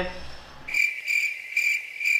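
Cricket chirping sound effect: a high chirp pulsing about three to four times a second, starting abruptly just under a second in over an otherwise silent background.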